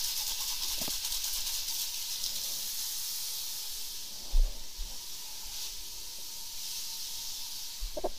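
High-pressure drain-jetting water spraying with a steady hiss, throwing up a white mist. A single knock comes about four seconds in.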